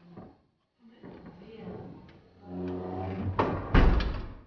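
Steel apartment entrance door being pulled shut, closing with two loud bangs in quick succession near the end.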